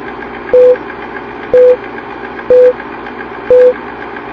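Film-leader countdown sound effect: a steady noise bed with a short beep once a second, four beeps in all, each beep starting with a click.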